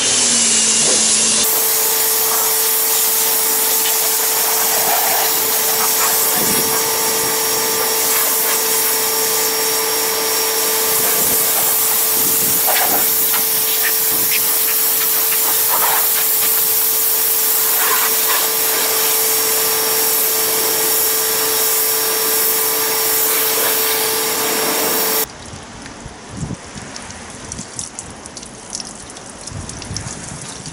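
Pressure washer running with a steady pump hum under the hiss of its jet, rinsing snow foam off a car's paintwork. About 25 seconds in it gives way to the quieter sound of water flowing from a hose and sheeting off the bonnet.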